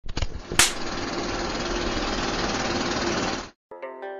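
A few clicks, a sharp burst, then a loud, steady, rattling mechanical-sounding noise that cuts off suddenly about three and a half seconds in. Plucked-string music starts just after, near the end.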